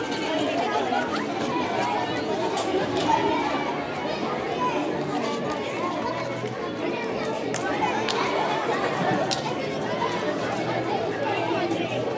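Many overlapping voices chattering at once, a crowd of schoolchildren talking, with a few brief clicks now and then.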